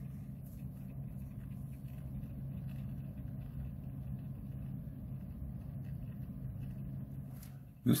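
Steady low background hum with no changes.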